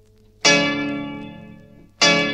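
Paraguayan harp: a full plucked chord struck about half a second in, ringing and slowly dying away, with the next chord struck at the end.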